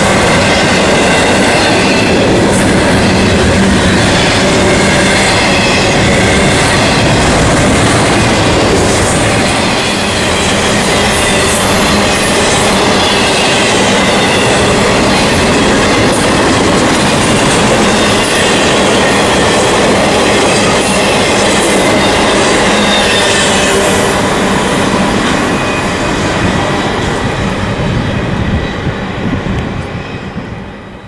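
Intermodal container freight train rolling past: the steady rumble of steel wheels on rail, with thin wavering wheel squeal and light clacking over rail joints. The sound falls away near the end.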